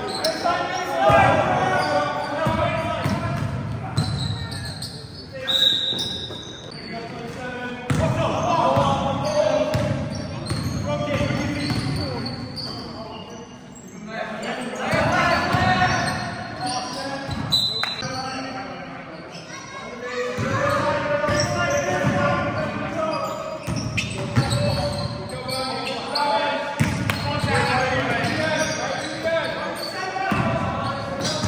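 A basketball game in a large sports hall: the ball bouncing on the court floor as it is dribbled, with players calling out to each other and the sound echoing. Twice there is a short high squeak, the kind shoes make on the court.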